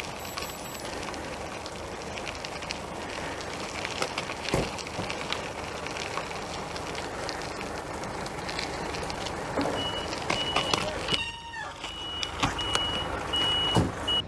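Steady vehicle noise, with a reversing alarm starting about ten seconds in: short beeps at one steady pitch, repeating a little faster than once a second.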